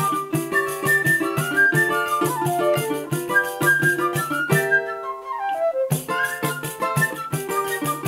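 Live choro on transverse flute, pandeiro and cavaquinho: the flute carries the melody over the pandeiro's steady beat and cavaquinho strumming. A little past halfway the beat drops out for about a second while the melody runs downward, then the whole group comes back in.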